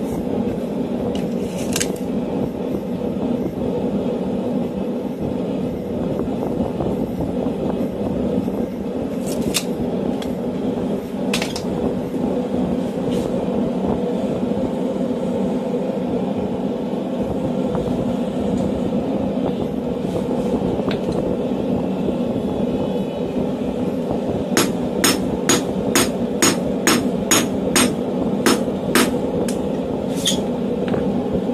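A hand hammer striking a hot mild-steel tong blank on an anvil. The blows come in a run of about a dozen evenly spaced strikes, roughly two a second, near the end. Before that there are only a few isolated knocks over a steady low rumble.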